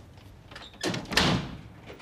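A door being shut about a second in: one loud knock with a short ringing tail.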